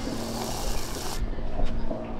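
A sip of an iced cocktail drawn through a plastic straw, a hissing suck lasting about the first second, over a steady low rumble of wind buffeting the microphone.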